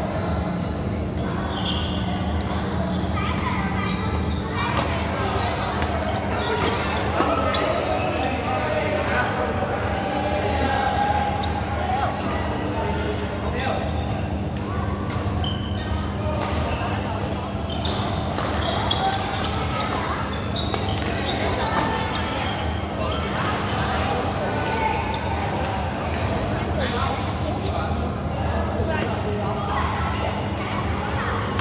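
Badminton rackets striking a shuttlecock at irregular intervals during a doubles rally, the sharp hits echoing in a large indoor hall. Underneath are a steady low hum and the chatter of people elsewhere in the hall.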